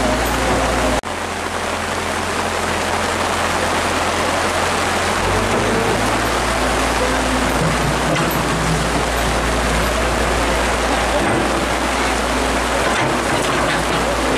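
A tracked excavator's diesel engine running for about the first second, then an abrupt cut to the steady hiss of heavy rain, with a low engine hum continuing underneath.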